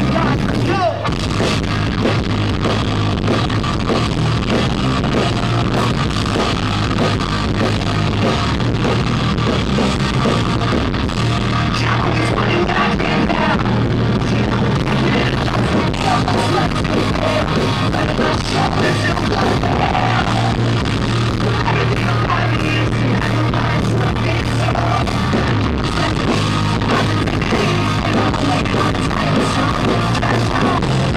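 Pop-punk band playing a song live at full volume, with distorted guitars, a steady bass and drums, and a lead vocalist singing into a microphone over the venue's PA.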